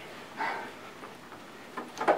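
A quiet pause with one soft breath about half a second in, and a few faint clicks just before speech resumes.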